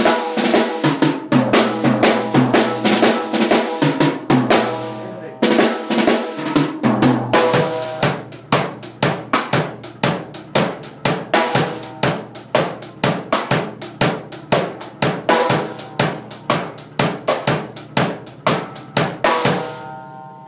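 Drum kit played with sticks: snare and bass drum fills (redobles) for a reggae beat. There is a dense run of strokes, a short stop about five seconds in, then steady strikes that end shortly before the close.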